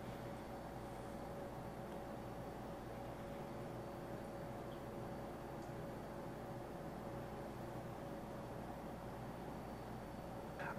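Stainless steel cat water fountain running: a faint, steady trickle of water spilling over its flower-shaped top, with a steady low hum.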